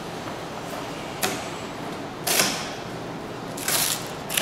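A sheet of birchbark rustling and scraping as it is handled and bent on a wooden workbench, in three short strokes: a brief one about a second in, a longer one midway, and another near the end.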